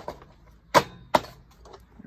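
Two sharp clacks less than half a second apart, about a second in: the flywheel cover of a Lawn-Boy two-stroke mower engine being pressed down and seated on the engine.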